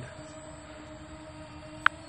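Faint, steady hum of a Yuneec Breeze quadcopter's rotors as it hovers, with one short high click just before the end.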